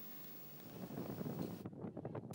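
Wind buffeting an open microphone with the rush of the sea, from deck footage of a ship under way; it rises out of near silence about half a second in.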